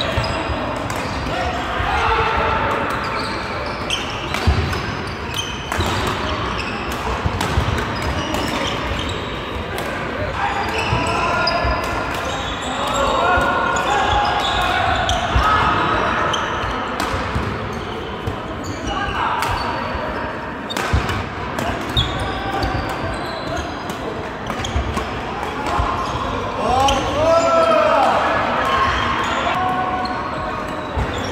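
Doubles badminton in a large, echoing sports hall: rackets striking the shuttlecock in sharp cracks again and again, over a steady bed of indistinct voices from players on the other courts. A few short squeaks, typical of court shoes on the wooden floor, come near the end.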